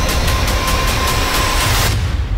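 Dramatic soundtrack of rapid, evenly spaced sharp hits, about six a second, over a deep rumble and held tones, cutting off abruptly near the end.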